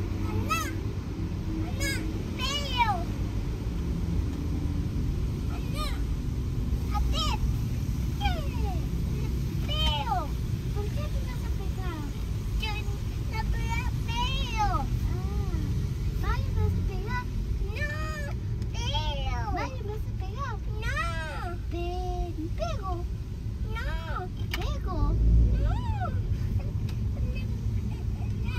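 A cat meowing over and over in short rising-and-falling cries, many of them in quick succession, over the steady low rumble of road noise inside a moving car.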